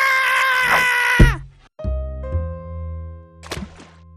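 Music sting: a long high held note that falls away about a second in, a thud, then a low sustained chord.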